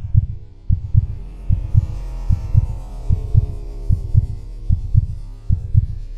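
Heartbeat-like pulse in a background soundtrack: low double thumps, one pair about every 0.8 seconds, over a faint sustained hum.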